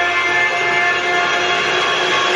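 Loud, steady chord of many held tones from the TV episode's soundtrack, a tense sustained score or drone at the episode's cliffhanger ending.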